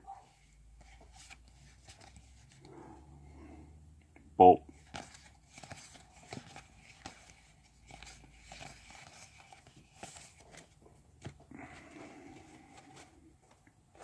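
Magic: The Gathering cards being handled by hand, sliding and flicking against one another in a string of faint clicks and rustles as they are sorted. A short vocal sound cuts in about four and a half seconds in.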